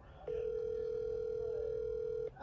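Telephone ringback tone on an outgoing call: one steady, even-pitched ring about two seconds long, starting a moment in.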